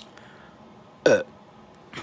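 A man's single short, loud burp about a second in, its pitch dropping steeply, let out after a swig from a drink can.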